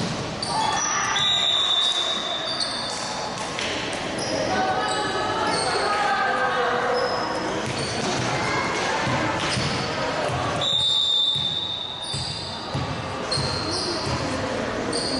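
Indoor volleyball game ambience echoing in a large gym: players and onlookers talking and calling out over occasional ball hits. A referee's whistle sounds twice, once about a second in and again near eleven seconds, each a steady high tone of about a second.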